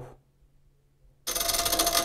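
A hand-held brushless electric starter motor kicks in suddenly about a second and a quarter in. It drives the Safir-5 turbine's rotor through a gear with a loud, fast rattling buzz over a steady whine. It starts hard.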